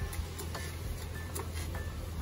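Background music with a light ticking beat.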